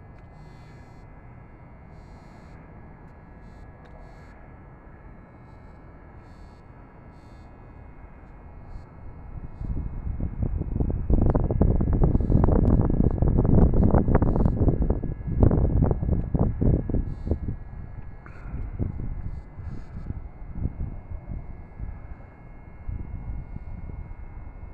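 Low rumble of an airplane passing overhead, swelling about eight seconds in, uneven at its loudest, and fading away after about ten seconds.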